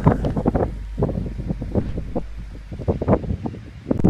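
Wind buffeting the microphone: a low rumble with scattered crackles and rustles, easing near the end.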